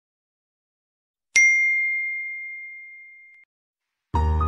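A single bell-like ding sound effect, the notification-bell chime of a subscribe-button animation, struck once about a second and a half in. It rings as one clear high tone that fades steadily for about two seconds, then cuts off.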